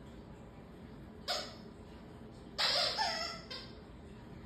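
A dog's squeaky plush toy, a sloth in a teacup, squeaking as a borzoi bites down on it: a short squeak a little over a second in, then a longer, louder squeak that bends in pitch, and a brief one just after it.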